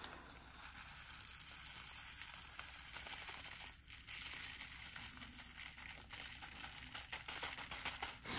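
Small plastic zip-lock bag crinkling and tiny resin diamond-painting drills rattling as they are handled and transferred into a clear storage container. Loudest for a second or so starting about a second in, then quieter, irregular handling noise.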